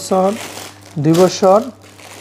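Clear plastic packaging bags of children's pants crinkling as they are handled, a short rustle near the start between words.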